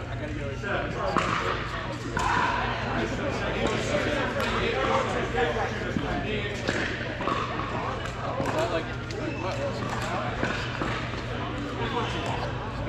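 Pickleball paddles hitting plastic balls and balls bouncing on the court: scattered sharp hits from this and neighbouring courts, echoing in a large indoor hall, over background chatter and a steady low hum.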